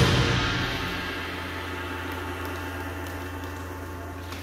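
A concert band's final chord and cymbal crash ringing away in the hall's reverberation after the cutoff, fading steadily over a low steady hum.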